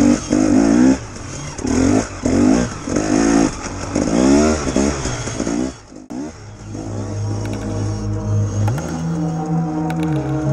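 Dirt bike engine revving up and down in repeated bursts as it is ridden, cutting off suddenly about six seconds in. Steady music takes over after that.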